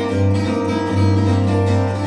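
Solo acoustic guitar played fingerstyle, a quick run of picked treble notes over a droning low bass note.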